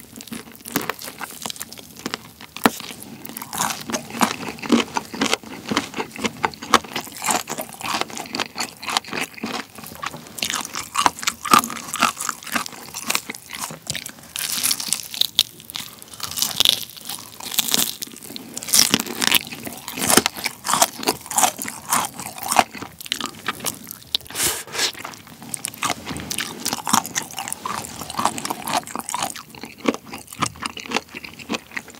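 Close-miked eating of BHC Bburinkle fried chicken: the crispy coated skin crunches and crackles with each bite, followed by chewing, in a continuous run of bites and chews.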